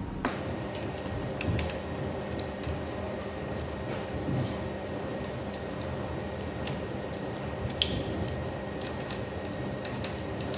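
Screwdriver and hands working a plastic beam-detector receiver onto a pole bracket: scattered light clicks and taps, the loudest about eight seconds in, over a steady background hum.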